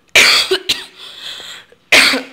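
A woman coughing, close to the microphone: a loud cough near the start, a shorter one just after, and another just before the end.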